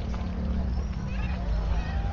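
Street traffic: a passing motor scooter's engine running with a steady low hum over a low rumble, with faint voices of people along the street.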